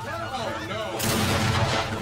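A voice speaking, then about a second in a sudden, loud blast whose noise lasts about a second, from a TV drama's soundtrack.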